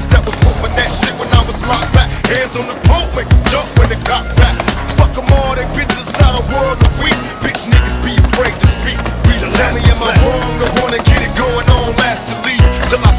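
Hip-hop music with a heavy, regular bass beat, over skateboard wheels rolling on concrete and the clacks of boards.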